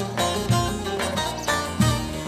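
Instrumental folk dance music played on plucked string instruments over a steady low beat, with no singing.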